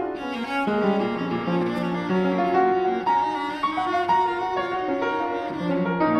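Cello bowing a melodic line with piano accompaniment, a flowing passage of contemporary classical chamber music.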